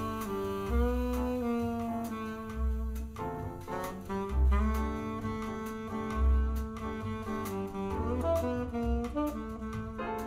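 Recorded slow jazz playing through Thiel CS 7.2 floorstanding loudspeakers: a held, melodic lead line over deep bass notes that come about every two seconds.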